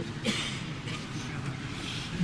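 Steady background noise of people in a large room, with faint indistinct voices, and a short hissing burst about a quarter of a second in.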